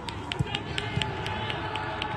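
Footballs being struck in a quick passing drill on a grass pitch: a rapid, irregular run of sharp taps, several a second.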